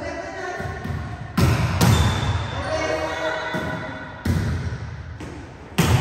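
Volleyballs being struck and bouncing on a gym floor. Three sharp, loud hits about a second and a half in, a little after four seconds and near the end, each ringing on in the hall, over background music.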